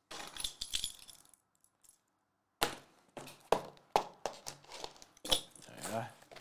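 Hands handling shrink-wrapped trading-card hobby boxes, with sharp clicks and crinkles of plastic film and cardboard. The handling stops for about a second, then starts again.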